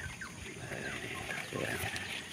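Faint outdoor background with small birds chirping in short scattered calls, and a brief lower call about one and a half seconds in.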